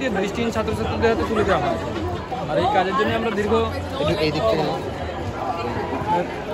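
Speech only: a man talking in conversation.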